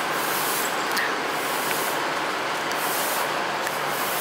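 A steady, even hiss-like noise with no strokes or rhythm in it.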